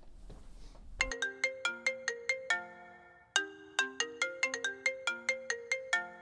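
Phone ringtone playing a melody of short plucked-sounding notes, about five a second. It starts about a second in and breaks briefly a little past halfway before going on.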